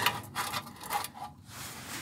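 A few light metallic clicks and scrapes as the thin sheet-metal panels of a modular camp stove are handled and seated against each other.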